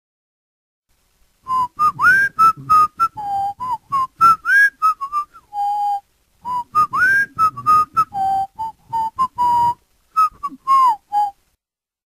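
A tune whistled in short quick notes, some of them sliding upward; the phrase comes twice, with a short break between.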